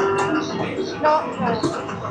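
Arcade ambience: electronic game music and jingles from the machines, with voices in the background.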